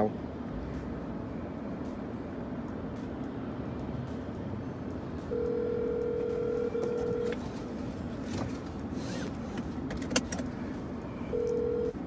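Telephone ringback tone heard over a mobile phone's speaker while a call is placed: one steady ring of about two seconds, then after a pause of about four seconds a second ring that is cut short as the call is answered. Faint clicks of the phone being handled come before the first ring.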